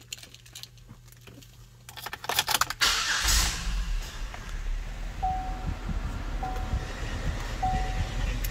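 Keys rattling and clicking, then about three seconds in the Buick Lucerne's 3.8-litre 3800 V6 cranks, catches and settles into a steady idle. Three short beeps of the dash warning chime come about a second apart over the idle.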